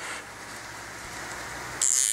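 Soft rustling handling noise, with a brief louder rustle or scrape near the end.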